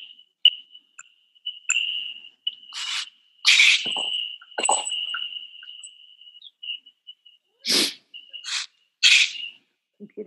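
Computer audio glitching during a call: a steady high whistle-like tone broken by short chirps and sharp bursts of hiss, the loudest burst about three and a half seconds in.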